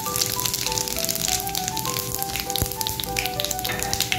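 Whole cumin seeds and whole spices sizzling and crackling in hot oil in a kadai, with background music playing a slow melody over it.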